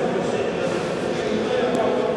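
Ambience of a large indoor sports hall: a steady background hiss with faint, indistinct voices from the court.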